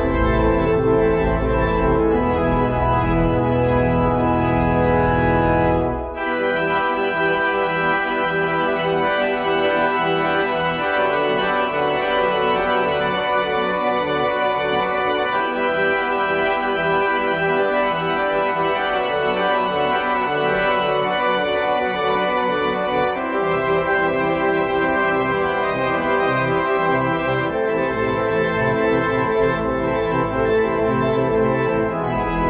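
Electronic church organ played with all stops drawn, in a freely formed postlude: held full chords over deep bass for about the first six seconds, a brief break, then faster-moving lines with little bass. The chords fill out again about two-thirds of the way in.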